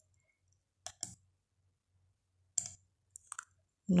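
Computer mouse buttons clicking: a quick pair about a second in, then a few more single short clicks near the end, with quiet between.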